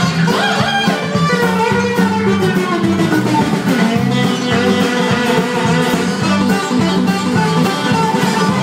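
A band playing an instrumental passage without vocals: guitar to the fore over bass and a drum kit, at a steady loud level.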